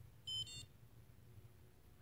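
A handheld blood ketone meter (Precision Xtra) gives two short, quick high-pitched electronic beeps a fraction of a second in, as its test countdown ends, signalling that the ketone reading is ready.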